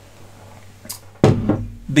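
A ceramic cup set down on a desk: a short click about a second in, then a louder knock with a short low hum after it, against quiet room tone.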